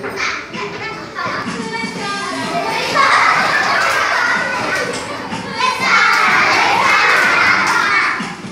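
A classroom of young children shouting and cheering together, swelling into two loud spells, about three seconds in and again near the end.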